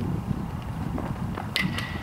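Two sharp cracks about a second and a half in, a quarter second apart, from a baseball striking a glove or bat. Wind rumbles on the microphone underneath.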